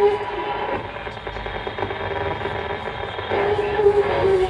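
Droning amplifier feedback and noise from a grindcore band's stage rig between heavy passages: steady held tones over a hiss. It sinks quieter in the middle and swells back up near the end.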